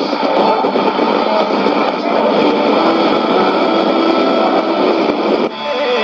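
Shortwave AM radio reception on 9400 kHz from a Sony ICF-2001D receiver's speaker: two stations' signals mixing into a noisy, garbled jumble. About five and a half seconds in it switches abruptly to clear guitar music as the receiver is retuned to 15515 kHz.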